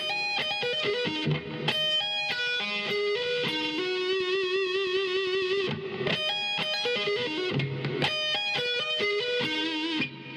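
Electric guitar playing a fast arpeggio lick, quick runs of notes that settle on a long held note with wide vibrato about four seconds in, then the phrase starts again about six seconds in.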